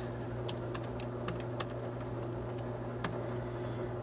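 Computer keyboard typing: a dozen or so irregular key clicks, over a steady low hum.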